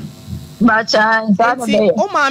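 A voice speaking, after a short pause at the start in which a faint low hum is heard.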